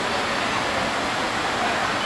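Steady, even hiss of city street background noise.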